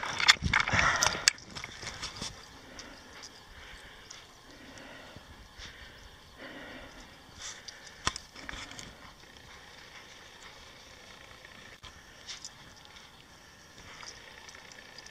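A second or so of loud crunching and rustling in snow, then quiet outdoor ambience with a few faint, isolated clicks.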